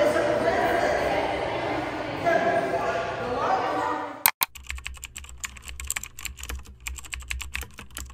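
Children's voices and water noise in an indoor pool for about four seconds. After an abrupt cut comes a rapid run of clicks like keyboard typing, a typing sound effect under the end-card text.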